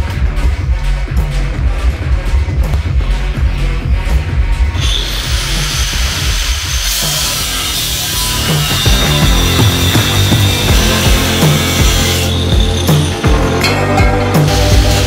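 Background music with a steady bass beat. From about five seconds in, an angle grinder runs on aluminum diamond plate under the music with a loud, high, even noise. It breaks off about twelve seconds in and starts again briefly near the end.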